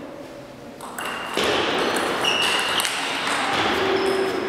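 Sneakers squeaking on the sports-hall floor in short high squeals as table tennis doubles players move, with light clicks of the ball. A louder broad rush of hall noise comes in about a second and a half in.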